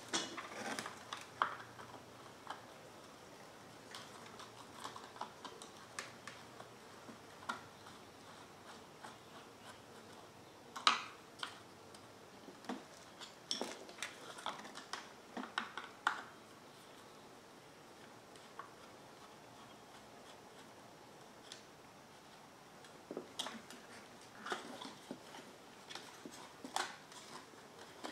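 Faint, scattered clicks and light knocks of a removed car blower motor and its plastic fan cage being handled on a plastic parts tray, with one sharper knock partway through and short runs of taps in the middle and near the end.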